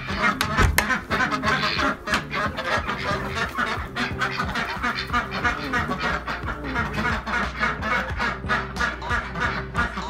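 Domestic ducks quacking in a quick, steady run of calls, about three or four a second, with music playing underneath.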